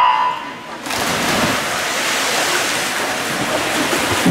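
A short electronic race-start beep right at the start, then about a second in the splash of swimmers diving in, running straight on into steady splashing of several swimmers doing freestyle.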